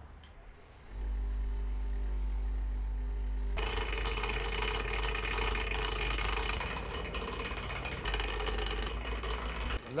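Bench grinder switched on about a second in, its motor humming steadily. From about three and a half seconds in, a metal tool is held against the spinning wheel, adding a harsh grinding hiss over the hum, until both stop just before the end.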